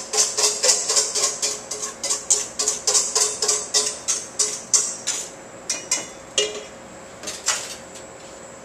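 Wire whisk beating against a stainless steel mixing bowl, mixing a frying batter for sweetbread fritters: rapid, even clinking at about four to five strokes a second. After about five seconds it slows to a few scattered strokes and stops near the end.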